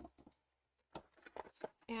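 A few faint taps and clicks of craft tools and a jar being handled on a tabletop, with a quiet gap in the middle; speech begins right at the end.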